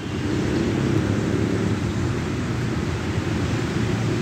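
Steady low rumble of truck engines and traffic.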